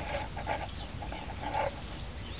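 A few short animal calls, the loudest near the end, over a steady low rumble.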